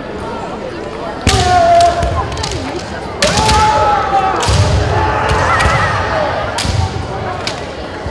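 Kendo fencers' kiai shouts, long held cries, with sharp bamboo shinai strikes and stamping footwork on a wooden gym floor: one loud attack a little over a second in, another about three seconds in, and a third near seven seconds.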